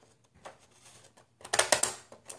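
Plastic zigzag-edge decorative craft scissors cutting through cardstock: a short run of crisp crunching clicks about a second and a half in, with only faint paper rustle before it. The blades are opened only part way, which is how these scissors cut cleanly.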